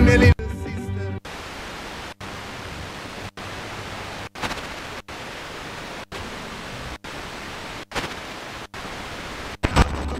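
Eton G3 FM radio being tuned up the band in 0.1 MHz steps: station music cuts off in the first second, then steady interstation hiss that mutes briefly at each tuning step, about once a second, with faint snatches of weak stations at a couple of frequencies.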